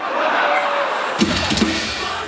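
Rock band's drum kit struck a few times about a second in, bass drum thumps among them, over the noise of a large crowd.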